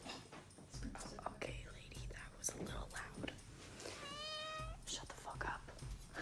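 Hushed whispering with soft rustling and footstep noises, and one short, high, steady-pitched call about four seconds in.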